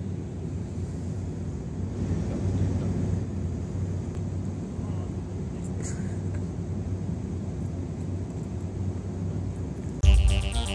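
Steady low rumble of distant vehicle traffic, with a faint click about six seconds in.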